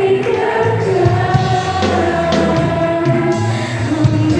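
Mixed youth choir of male and female voices singing a gospel song together, holding long notes.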